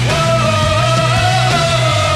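Rock band playing live through a big festival PA, with a steady, pulsing bass line under a long held high note that starts sharply and sags slightly in pitch near the end.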